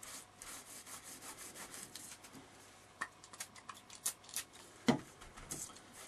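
Paper towel rubbed back and forth over an embossed acetate sheet to wipe white acrylic paint off its raised surface: quick, scratchy wiping strokes, with a few sharper, louder ones about halfway through.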